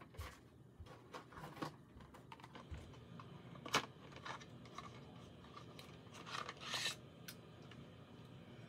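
Small cardboard box being handled and opened by hand: faint rubbing and rustling of card, with a sharp click about four seconds in and a longer rustle near seven seconds.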